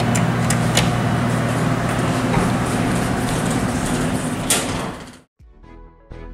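Elevator machinery running with a steady low hum and scattered sharp clicks, cut off suddenly about five seconds in; faint music follows.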